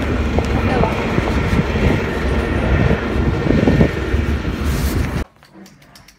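Loud outdoor street noise picked up by a phone carried while walking on a paved footpath, with a heavy low rumble and scattered knocks; it cuts off suddenly about five seconds in.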